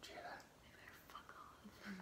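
Faint whispering, barely above near silence, with a brief low hummed voice sound near the end.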